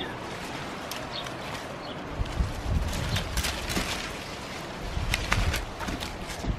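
Hand secateurs snipping grapevine stems, with a few short sharp clicks, and the vine's leaves rustling as the cut piece is pulled away.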